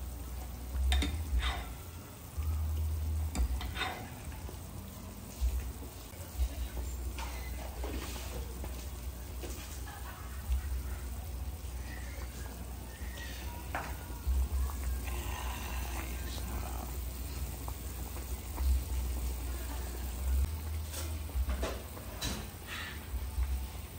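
Pot of bulalo soup boiling hard, its broth bubbling steadily, with a few knocks of a ladle against the metal pot, several in the first few seconds and a couple more later.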